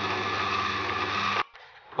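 Electric motor of a lathe-mounted milling attachment running with a steady hum, which cuts off suddenly about one and a half seconds in.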